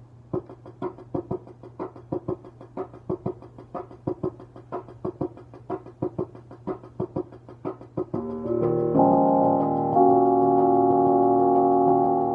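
Keyboard music: quick, short notes, several a second, then louder sustained chords from about eight seconds in.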